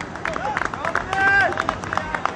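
Players calling out across a cricket field, with scattered claps; one long high call about a second in is the loudest sound.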